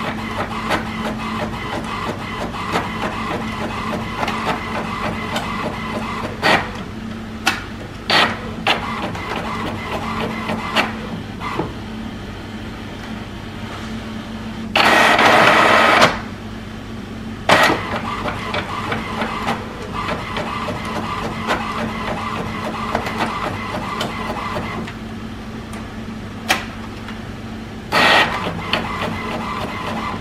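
HP Envy Pro 6455 all-in-one inkjet printer running a copy job, its document feeder pulling the original through the scanner while the print mechanism feeds and prints a page. It is a steady mechanical whirr with a low hum and frequent short clicks. A louder rush lasts about a second about halfway through, and a shorter one comes near the end.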